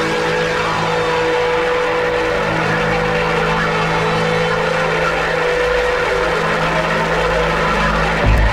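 Psychedelic trance in a breakdown: held synth tones over a dense, noisy high texture with no steady kick drum, and a low rumble swelling beneath in the second half.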